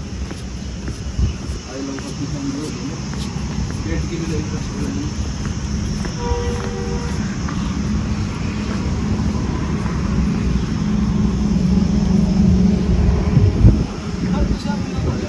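Steady low outdoor rumble that grows a little louder toward the end, with a brief faint pitched sound about six seconds in.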